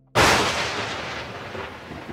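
A logo-reveal sound effect: one sudden loud boom, like a thunderclap, just after the start, followed by a noisy rumble that slowly dies away.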